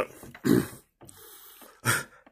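A man's throaty coughs: one as the clip opens, another about half a second in, then a rasping breath and a last cough near the end.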